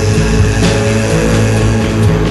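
Loud psychedelic rock from a guitar, bass and drums power trio, thick sustained guitar and bass tones running without a break.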